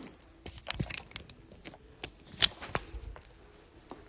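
Handling noise of a phone being picked up and carried: rustling with scattered light clicks and knocks, the sharpest about two and a half seconds in.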